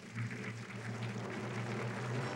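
Audience applauding, an even patter of many hands, over a low held note of background music.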